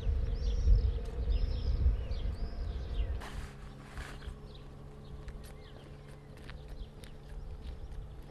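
Birds chirping in short repeated calls over a loud low rumble. About three seconds in the rumble drops away suddenly, leaving a faint steady low hum with scattered chirps and clicks.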